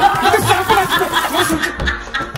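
A person giggling and laughing in quick repeated bursts, over background music.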